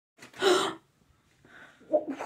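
A child's single gasp: one short, sharp breath lasting about half a second, with a voice starting up just at the end.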